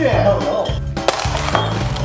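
Background music with a steady bass beat, with a voice over it.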